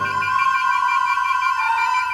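A flute holds a long high note over a thin sustained chord, with the rest of the orchestra dropped out; the note steps down slightly about one and a half seconds in.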